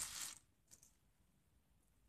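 Small metal hinges and a hinge-link track being picked up and handled: a short metallic rattle at the start, then a few faint clicks, otherwise near silence.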